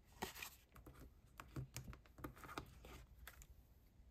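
A scatter of faint rustles and soft taps: card stock and a clear acrylic stamp block with a mounted rubber stamp being handled and lined up on a craft mat.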